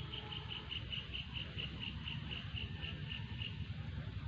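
An insect chirping in a quick even series of short high notes, about four to five a second, slowing slightly and stopping near the end. Under it, a steady low rumble of wind on the microphone.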